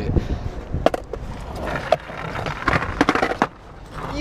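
Skateboard wheels rolling over concrete, with a cluster of sharp clacks about three seconds in as the board slips out and the novice rider falls.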